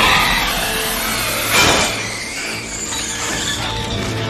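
Film soundtrack: music over heavy metal chains and restraints clanking and grinding, with a sharp metallic impact about one and a half seconds in.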